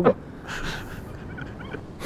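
A pause in the talk: steady low background noise, with a soft exhale about half a second in and a few faint, brief chirps about a second and a half in.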